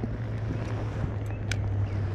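Steady low background rumble with a faint hum, and a single sharp click about one and a half seconds in.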